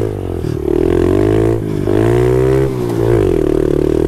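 Honda CRF70 pit bike's small four-stroke single-cylinder engine, fitted with an FMF PowerCore 4 exhaust, running while riding, its revs rising and dropping three times.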